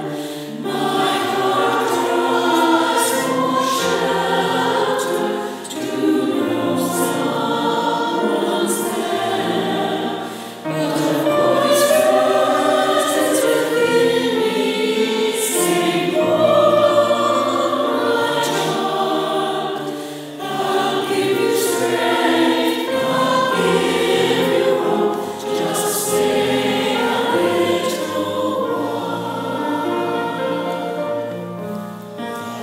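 Mixed choir of women's and men's voices singing in sustained phrases, with brief breaths between phrases.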